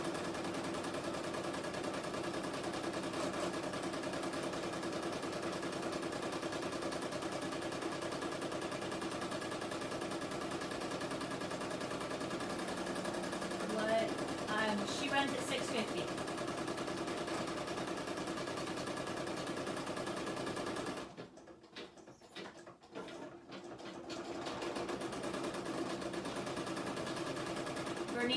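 Home embroidery machine stitching steadily at speed. About two-thirds of the way through it stops for roughly three seconds, then starts stitching again.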